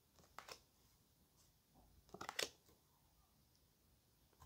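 Near silence broken by faint, brief clicks of tarot cards being handled: two short ticks about half a second in and a quick cluster of them around two and a half seconds in.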